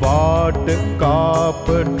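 A Gujarati devotional song: a solo voice sings a melodic line over steady instrumental accompaniment, with a brief break between phrases near the end.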